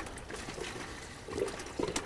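Fresh water poured from a plastic gallon jug into a minnow bucket, a faint trickle.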